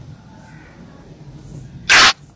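A pause with only a faint low hum, then near the end a short, loud, hissing burst of breath, a sharp intake just before the speaker talks again.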